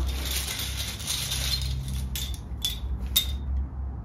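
Small plastic numbered draw tokens rattling and clicking together in a cloth bag as one is picked out, ending in a few separate sharp clicks.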